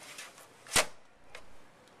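Sheet-metal compute sled of a Dell PowerEdge C6100 server being slid out of its chassis: one sharp metal clack about three-quarters of a second in, followed by a couple of faint clicks.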